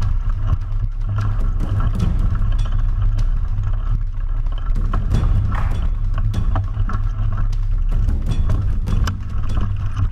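Mountain bike rolling fast over a bumpy dirt trail, heard from a camera clamped to the rear swing-arm: a heavy steady rumble of tyre and frame vibration with frequent sharp clacks and rattles of the chain and parts over the bumps.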